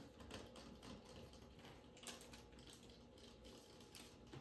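Near silence with faint, scattered light clicks and crinkles of a DIY candy kit's small packets, cardboard box and plastic tray being handled, one click a little louder about two seconds in.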